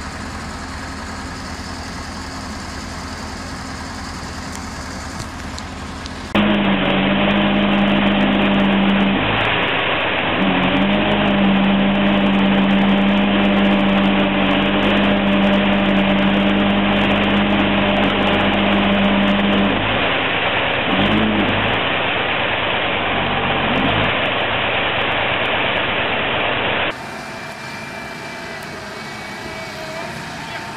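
Heavy machinery engines running, in three separate clips. First a JCB tracked excavator's engine runs steadily. Then, louder, an old crawler tractor's engine runs with a strong steady drone that breaks off briefly about 9 seconds in and again about 20 seconds in. Last, a JCB backhoe loader's engine runs.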